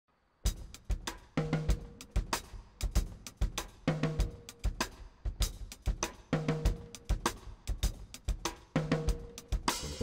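Jazz drum kit playing a groove of kick, snare, hi-hat and cymbal, starting about half a second in. A short low pitched figure comes back about every two and a half seconds. The drums build with a quick fill near the end.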